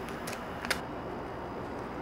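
Blue painter's tape handled and torn from its roll: a few short crackles and one sharp snap about two-thirds of a second in, over a steady background hiss.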